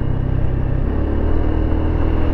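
Honda SH150i scooter's single-cylinder engine running at road speed, mixed with wind and road noise; the drone settles to a lower note about a second in.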